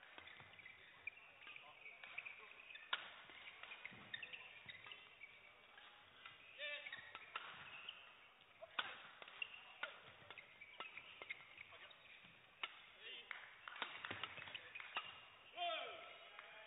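Badminton rally: a string of sharp racket strikes on the shuttlecock in quick back-and-forth exchanges, with shoes squeaking on the court floor.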